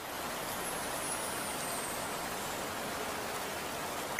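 A steady rushing noise with no pitch to it, like wind or rain, at an even level throughout.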